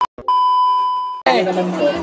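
A steady one-tone electronic beep lasting about a second, just after a short click; it cuts off sharply and voices start talking.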